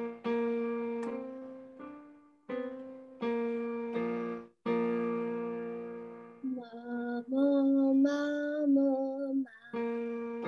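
Piano playing a run of notes that strike and fade away, then, about six and a half seconds in, a female voice sings a short phrase of held notes with wavering pitch, a vocal exercise over the piano; the piano comes back in near the end.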